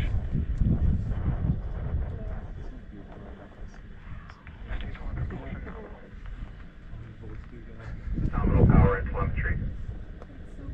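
Low, distant rumble of a Falcon 9 rocket climbing away after launch. It fades over the first few seconds and then goes on quietly, with people's voices rising near the end.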